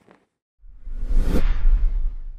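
Whoosh sound effect for a TV news channel's animated logo sting. It starts about half a second in, with a deep rumble under a hiss that swells up to a peak and then fades.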